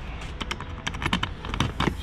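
A bunch of keys jingling and clicking in the hand, then a key going into and turning in the lock of a plastic scooter top case. The result is a quick series of small clicks and rattles, thicker in the second half.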